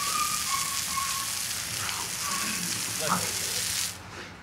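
Garden hose spray nozzle hissing as a jet of water hits a concrete patio. The spray cuts off abruptly just before the end.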